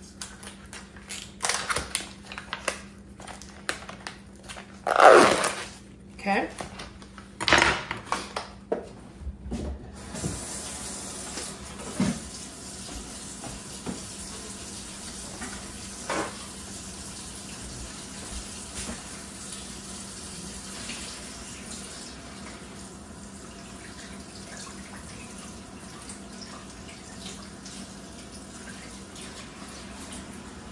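Plastic fish packaging being slit open and handled, with sharp rustles and knocks for about the first ten seconds. Then a kitchen tap runs steadily into a stainless steel sink as raw cod fillets are rinsed under it.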